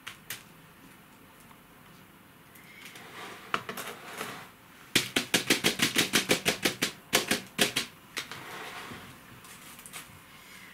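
Expanded-clay pebbles clattering in a plastic orchid pot as the substrate is worked and settled. A few scattered clicks, then a fast, even rattle of about seven clicks a second for some three seconds.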